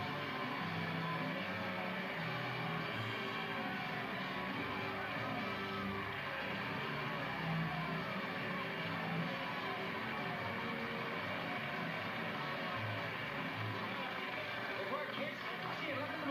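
Orchestra music from an old film soundtrack, played through a TV's speaker, with the voices of a crowd mixed in.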